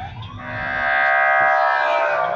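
Emergency-vehicle siren, likely a police car's, sounding loud: its tone rises over the first half second, then holds steady.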